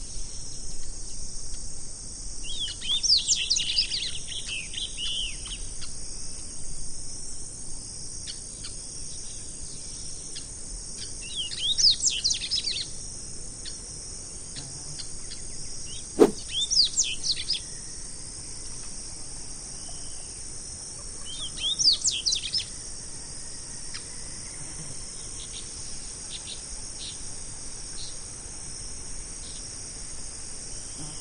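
Double-collared seedeater (coleirinho) singing four short phrases of fast, high notes several seconds apart, over a steady high-pitched insect drone. A single sharp click sounds about halfway through.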